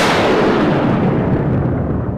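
Dramatic background-score sting: a loud crash that swells up and then dies away in a long fading tail over about two seconds.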